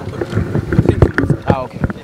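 Voices of several people talking close to the microphones, with low rumble and a few knocks from handheld microphones being handled.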